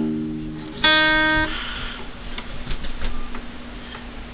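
Guitar plucked: a chord rings and fades, then a brighter note about a second in is damped after half a second, leaving faint string ringing and small clicks.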